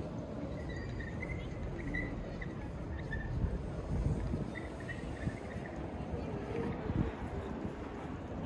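Open-air ambience of a large city square: a steady low rumble of wind on the microphone, with faint distant voices of passers-by.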